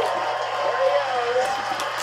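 Speech only: a person's voice murmuring, with no other distinct sound.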